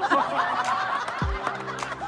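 People laughing, with background music and a low drum beat underneath.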